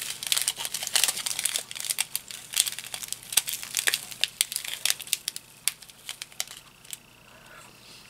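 Small clear plastic packets of diamond-painting drills crinkling and crackling as they are handled and turned in the fingers, in irregular sharp crackles. The crackling thins out and goes quieter for the last second or so.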